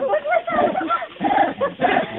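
An animal's short, high yelps and whimpers, mixed with people's voices.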